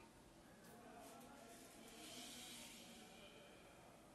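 Near silence: room tone, with a faint breath of air around the middle.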